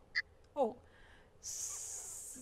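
A telephone call breaking up and dropping on a broadcast line: two short garbled scraps of the caller's voice, then a steady high hiss on the dead line from about one and a half seconds in.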